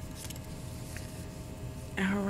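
Quiet room tone with a faint steady hum; no distinct sound stands out.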